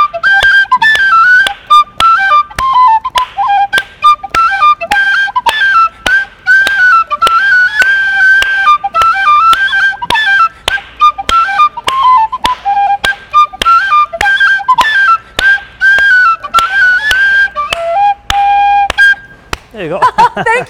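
Penny whistle (tin whistle) playing a lively, quick-stepping tune, with hand claps keeping a steady beat about twice a second. Near the end it holds one long lower note and stops.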